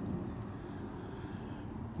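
Steady low outdoor background rumble, with no distinct events.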